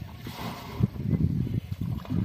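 Water splashing and sloshing as a bucket is emptied into a plastic water tank and dipped back into the river, with an irregular low rumble underneath.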